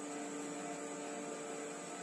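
Steady electrical mains hum, a few even tones over faint hiss, with no other sound standing out.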